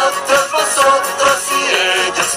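A children's song about the Spanish personal pronouns: a cartoon voice singing the line listing "yo, tú, él, nosotros, vosotros y ellos" over an upbeat backing track.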